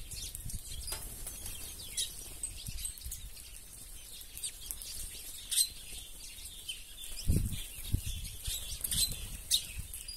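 Mixed flock of ground-feeding seed birds, red-cowled cardinals and yellow finches among them, giving many short high chirps and calls, with wings flapping as birds land and take off. There are a few louder low wing thumps about seven and eight seconds in.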